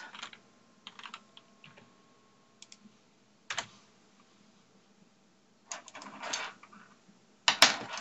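Computer keyboard keys tapped in short, irregular clusters as numbers for a division are keyed in, with a louder clack near the end.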